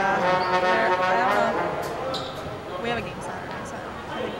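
A loud horn tone with many overtones starts suddenly and sounds for about two seconds, over voices in the gym.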